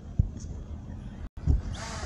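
Wind buffets the microphone with low thumps, then near the end the DJI Spark drone's motors spin up with a rising, building propeller whine as it lifts off.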